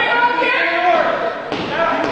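Loud voices calling out, with no clear words.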